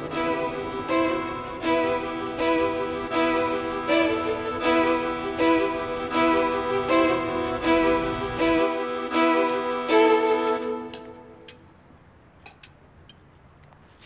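Dramatic background score led by violins and bowed strings, with a steady pulsing rhythm of repeated notes, fading out about eleven seconds in.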